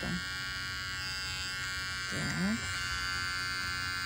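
Electric animal hair clipper with a guard comb attached, buzzing steadily as it is run through the pile of faux fur.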